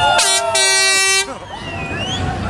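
Vehicle horn sounding two blasts, a short one and then a longer one of about three-quarters of a second, which cuts off suddenly. Crowd voices whoop and shout around it.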